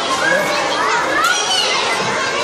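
A roomful of young children talking and calling out over one another, a steady din of overlapping high voices.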